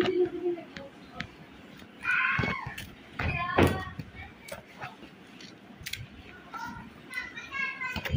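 Scissors snipping through papaya leaf stalks, a few short sharp clicks, while children's voices call out in the background, loudest a couple of seconds in and again near the end.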